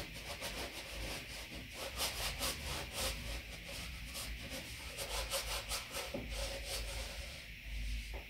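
Paintbrush scrubbing oil paint onto canvas: a rough, scratchy rubbing in quick, irregular strokes, several a second.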